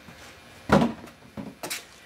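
An outboard motor's hood set down with a sharp knock, followed by a couple of lighter knocks and clicks as it is handled.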